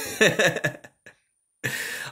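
A man laughing for about a second, then a short pause, then his speech begins near the end.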